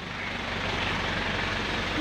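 An engine idling steadily with an even low pulse, under a rushing hiss of water as sewage flows into the drain chamber once the blockage is poked loose.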